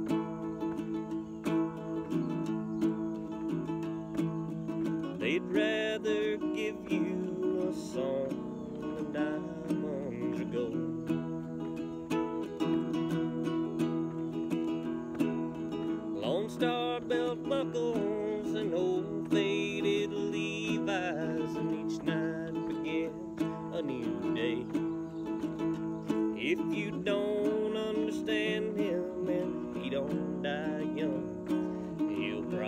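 A small-bodied acoustic guitar strummed steadily in a country style, with a man's voice singing in short phrases over it at times.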